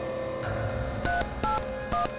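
Telephone keypad being dialled: three short two-tone beeps about half a second apart, each key giving a different pair of notes.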